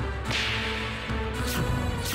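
Dramatic whoosh sound effects over a sustained background score. There is a broad swoosh just after the start and a sharper, quicker swish about a second and a half in.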